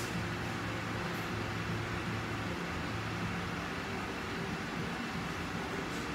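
Steady rushing of a lit gas stove burner under a large cooking pot, with a low hum beneath it.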